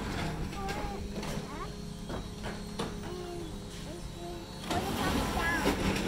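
Garbage truck's diesel engine running steadily down the street, growing louder near the end as it pulls away.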